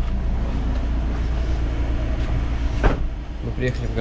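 A minivan's engine idling with a steady low rumble, and a single sharp knock about three seconds in.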